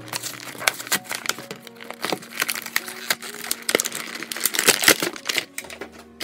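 Clear plastic toy packaging being handled and pulled open, crinkling and crackling with irregular sharp snaps.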